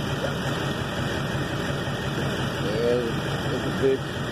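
A vehicle engine idling steadily, with brief distant voices near the end.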